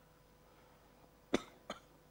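A person coughing twice in quick succession, two short sharp coughs, the first louder, over a faint steady electrical hum.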